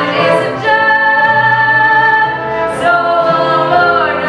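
A woman singing a show tune over musical accompaniment, holding one long note from about a second in, then moving to a lower held note near the end.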